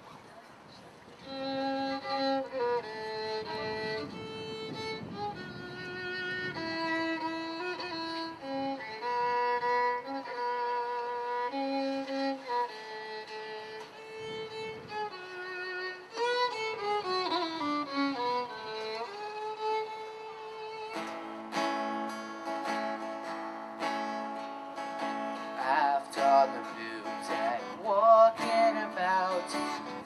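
Instrumental introduction to a folk song: a fiddle plays the melody alone at first, and a fuller accompaniment with sustained low chords joins about two-thirds of the way through.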